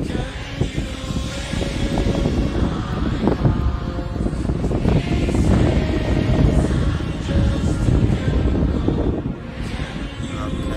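Live concert audio: a dense, low-rumbling instrumental passage played through a large venue's sound system, with a big audience.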